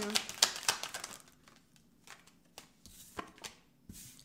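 A deck of tarot cards being shuffled by hand: a quick run of soft card slaps and riffles for about the first second, then only a few scattered taps as the cards are handled.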